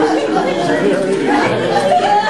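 Several people talking at once: overlapping chatter with no single voice standing out.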